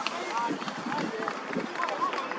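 Indistinct shouts and calls from rugby players and sideline spectators, several short raised voices overlapping over a steady outdoor background.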